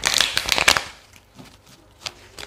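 A deck of tarot cards riffle-shuffled by hand: a quick run of fast flicking as the halves riffle together and are bridged, lasting about a second. Softer handling follows as the deck is squared.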